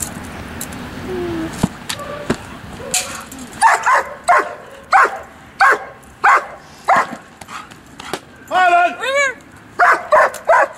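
Dog giving a steady run of barks, about three every two seconds, beginning a few seconds in: the dog barking at the helper in Schutzhund/IPO protection work. Near the end the barking breaks into one drawn-out whining yelp that rises and falls, then the barks resume.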